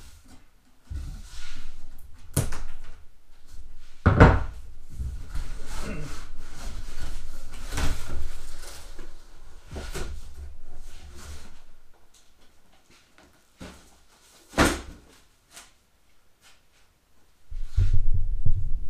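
Cardboard box being opened by hand: flaps pulled open and folded back, with rustling cardboard and knocks, the loudest about four seconds in. After about twelve seconds it goes quieter, with a few single thumps, one sharp one just before the end.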